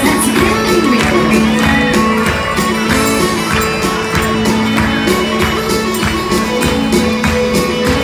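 Live band playing a lively tune led by bagpipes: the drones hold one steady low note under the chanter's melody, with guitar, bass and keyboard and a steady beat.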